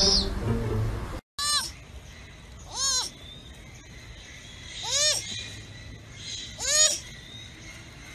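Young sloth calling in high squeaks, four times about two seconds apart, each call rising and then falling in pitch. For the first second, background music plays and then cuts off abruptly.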